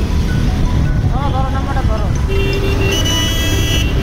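Loud steady rumble of wind and motorcycle engine while riding in city traffic, with a vehicle horn sounding for about a second and a half in the second half, getting brighter and louder just before it stops.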